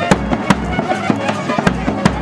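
Live wedding band music: trumpets and other wind instruments play a wavering melody over a drum beat with sharp percussive strikes.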